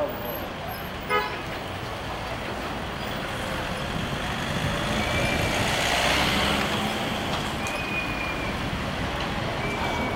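Street traffic with cars passing, growing louder to a peak about six seconds in as a vehicle goes by close. A short car horn toot sounds about a second in.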